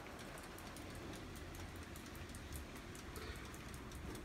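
Faint room noise with a low hum and light, irregular ticking.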